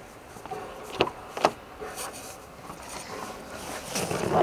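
Two short sharp clicks about a second in, from the driver's door handle and latch of a Nissan Navara pickup being opened, followed by faint handling noise as someone gets into the cab.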